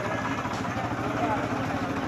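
Tractor's diesel engine running steadily at low revs, with crowd voices over it.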